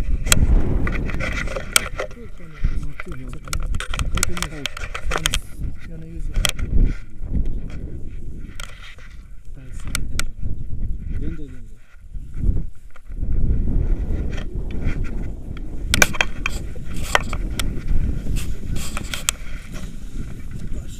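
Wind rumbling and buffeting on a handheld action camera's microphone. Scattered sharp clicks and rustling come from handling of the camera and the paragliding harness buckles, with a few faint voices.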